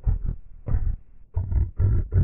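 Heavily effects-distorted advert soundtrack, pitched down: a run of short, low, growl-like bursts, about five in two seconds.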